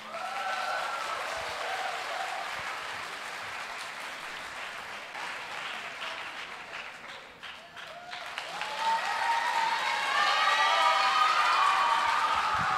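Audience applauding in a large hall. The clapping thins out around the middle and then swells again, louder, in the last few seconds.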